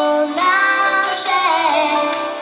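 Children's choir singing a Christmas carol into microphones, held sung notes moving step by step, with a brief break about a third of a second in.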